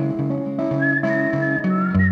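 Fingerpicked archtop electric guitar playing a slow, capoed accompaniment, with a person whistling a melody over it. The whistled line comes in about two-thirds of a second in, holding high notes joined by small slides.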